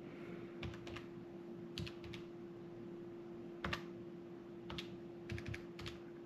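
Faint, light taps and clicks, about a dozen in irregular clusters, from fingers tapping on a smartphone while a figure is looked up. A steady low hum sits underneath.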